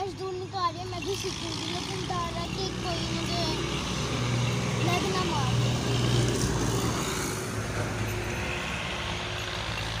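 A steady low engine hum from a vehicle or motor running, with faint voices in the background.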